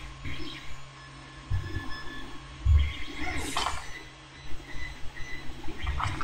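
Faint handling noises as small paper model parts are picked up and moved on a cutting mat. There are a couple of soft low thumps and one brief rustle about halfway through.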